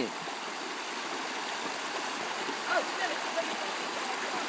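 Shallow rocky stream running: a steady rush of flowing water.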